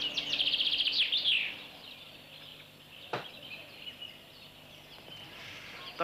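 A bird sings a rapid, high trill of quick repeated chirps for about the first second and a half, then the sound drops to a faint hiss with a single short click about three seconds in.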